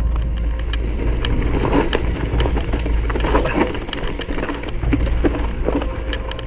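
Enduro mountain bike ridden fast down a rooty dirt trail: tyres rumbling over the ground, with many short knocks and rattles as the bike hits roots and stones. A steady low rumble of wind on the camera runs underneath.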